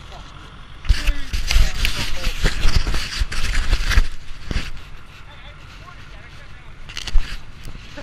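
Camera handling noise: about three seconds of rubbing, scraping and knocking right on the microphone, then a quieter stretch broken by a single sharp thump near the end.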